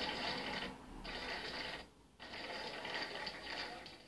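A roomful of people clapping their hands: a dense run of overlapping claps that breaks off briefly twice, about one and two seconds in.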